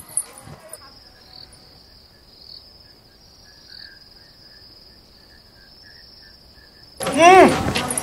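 Crickets chirping in a steady high-pitched trill. Near the end a loud voice suddenly cries out, its pitch swooping up and down.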